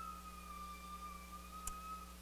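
A faint, steady, high-pitched tone held at one pitch through the pause, with a small click near the end.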